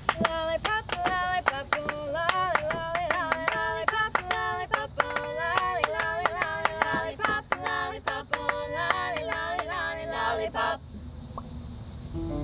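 A female vocal quartet singing a 1950s-style pop song in close harmony, with steady rhythmic handclaps on the beat. The singing and clapping stop about eleven seconds in.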